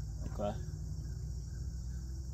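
Steady, high-pitched chorus of crickets droning without a break, over a low background rumble.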